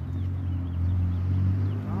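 Street sound: a steady low hum from a nearby vehicle engine that grows louder, with a few faint bird chirps in the first second.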